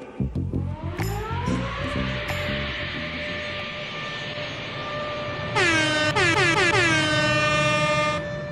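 Electronic logo sting: after a few beats of music, a synth sweep rises and settles into a held tone. About five and a half seconds in, a loud horn-like synth blast sounds, dipping in pitch about five times in quick succession and then holding.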